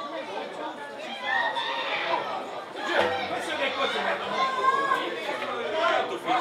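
Several overlapping voices chattering and calling out, no single voice clear: youth footballers on the pitch and people along the touchline.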